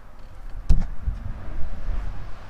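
Handling noise and wind rumble on a handheld camera's microphone as the camera is swung around, with one sharp knock a little under a second in.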